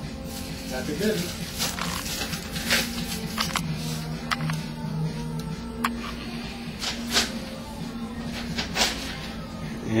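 Irregular light clicks and clinks from a metal link-bracelet watch being turned over in the hand, over a steady low hum.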